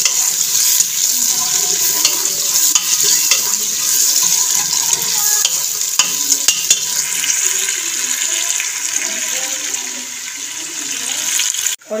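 Sliced onions and garlic frying in ghee in a pressure cooker, sizzling steadily while a spoon stirs and scrapes against the pot in scattered clicks. The sound breaks off briefly just before the end.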